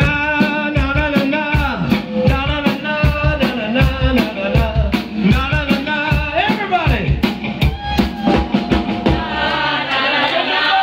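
A live rock and soul band playing: a male lead singer sings over electric bass, guitar and a steady drum-kit beat.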